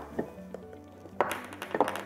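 Background music, with two light metal taps in the first half second as a pin spanner tightens the float stopper on a wastewater air valve.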